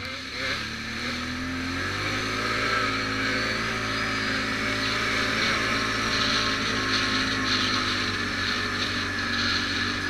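ATV engine running under way, its pitch rising over the first two seconds as it speeds up, then holding steady.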